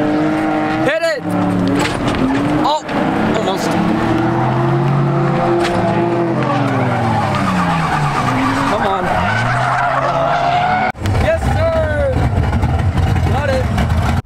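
Car engine revving up and down in several pulls, with tyre squeal, broken by a few abrupt cuts.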